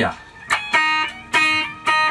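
Les Paul 1960 reissue electric guitar, freshly refretted, played clean through an amp: two plucked notes or chords struck about a second apart, each ringing on.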